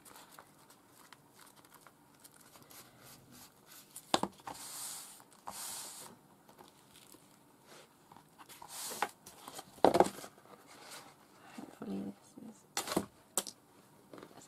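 Sheet of paper rustling and sliding as it is handled and laid down, in a few short bursts, with several sharp taps and knocks on the desk.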